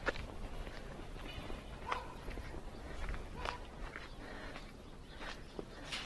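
Footsteps on a concrete slab path: a handful of separate, unhurried steps.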